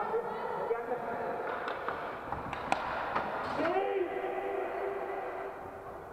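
Inline hockey players calling out to each other, with one held call about halfway through, in a large indoor sports hall. A couple of sharp clacks from sticks hitting the puck come in the first half.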